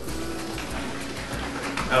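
A capped plastic water bottle of thick corn syrup, corn starch and water being shaken hard to mix it, the liquid sloshing, over background music.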